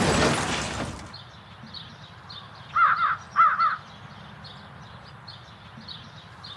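Loud intro music fades out in the first second, giving way to quiet open-field background with faint, repeated chirping of small birds. About three seconds in, a crow caws four times, in two quick pairs.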